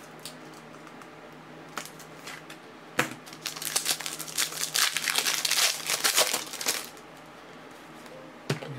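Foil wrapper of a trading-card pack being torn open and handled. A sharp click about three seconds in, then rustling for about four seconds.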